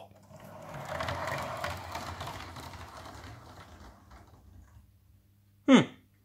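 Lego train carriage on Bricktracks wheels with miniature ball bearings rolling down a ramp and along plastic Lego track, a fine rattling clatter. It builds over the first second, then fades away over the next few seconds as the car rolls off into the distance.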